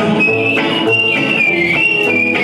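Live bluegrass-style band playing, with a whistled melody line of held, gliding notes over banjo and upright bass.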